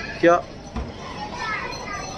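A man says one short word, then the background murmur of an airport terminal hall carries on: a steady haze of distant voices, fainter than the word.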